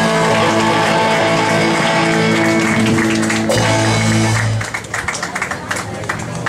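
Live rock band with electric guitars, bass and drums ringing out a sustained chord that stops about four and a half seconds in, followed by scattered hand clapping from the audience.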